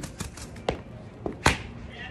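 A few separate sharp knocks and taps, the loudest about one and a half seconds in.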